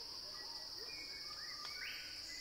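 Faint tropical rainforest ambience: a steady high-pitched insect drone runs throughout, with scattered short bird calls that slide up and down in pitch.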